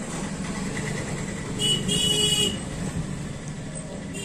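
A vehicle horn sounds once, for just under a second, about halfway in, over a steady low hum.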